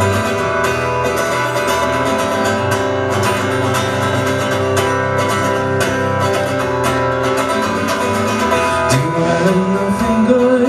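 Amplified acoustic guitar strummed steadily in a live concert hall. A singing voice comes in near the end.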